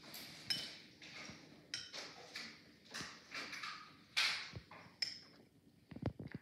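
A dog barking in her sleep: a run of short, quiet barks, about a dozen over six seconds, with the loudest a little after the middle.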